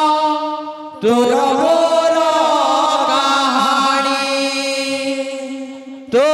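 Sambalpuri kirtan singing, long sustained devotional phrases. One held line dies away, a new phrase starts about a second in, and it fades out near the end.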